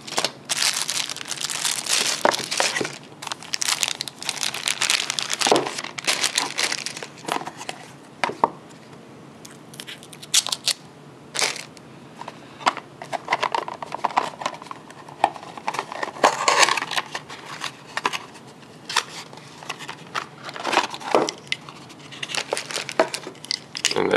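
Thin clear plastic packaging bags crinkling and rustling in irregular bursts as items are pulled out of them, with a few sharp clicks and knocks in between.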